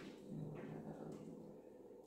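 A man's faint, low hum, held for about a second while he pauses for a word.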